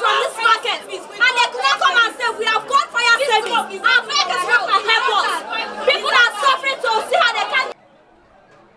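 Several women shouting and talking over one another; the voices cut off abruptly near the end.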